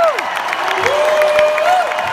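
Large arena crowd clapping and cheering, with long drawn-out "woo" shouts held over the applause, one trailing off about two seconds in.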